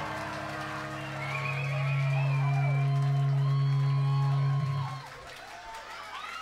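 Punk rock band's final chord ringing out through the guitar amps as one low sustained note that swells about two seconds in and cuts off sharply near five seconds, the end of the song. The crowd whoops and cheers over it.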